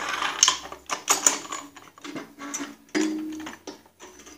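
Irregular metallic clinks and rattles as a Snapper rear-engine rider's chain case, with its roller chain and sprocket, is wiggled by hand back onto its shaft.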